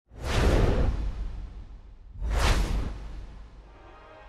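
Two whoosh sound effects for an animated title graphic, one at the start and one about two seconds in, each a rush with a deep rumble beneath that fades away.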